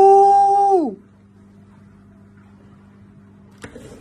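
A man's high, held "Ooh!" of mock surprise, steady for about a second and then dropping in pitch as it fades, followed by only a faint steady hum.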